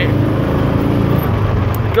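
Utility vehicle's engine running at a steady pace as it drives over grass, a constant low hum heard from the cab.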